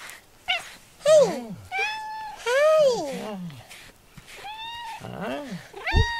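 A cat meowing repeatedly while being brushed: about six drawn-out calls, some held level and some arching up and falling away in pitch.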